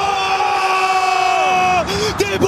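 A single shouted note held for nearly two seconds over stadium crowd noise, sagging in pitch just before it stops.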